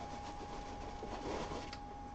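Paper packing and fabric rustling as a folded kilt is lifted out of a cardboard box, the handling noise strongest in the second half with a few small clicks. A thin steady tone runs underneath.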